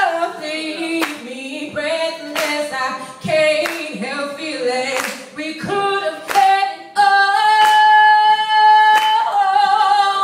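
A woman singing solo a cappella into a microphone, with runs sliding up and down and a long held high note near the end. An audience claps along on the beat, about once a second.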